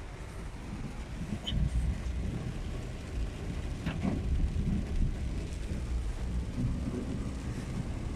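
A car driving on rain-soaked roads, heard from inside the cabin: a steady low rumble of engine and tyres on the wet road.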